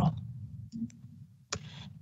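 A few faint clicks over a low hum, then a sharper click about one and a half seconds in, followed by a moment of hiss.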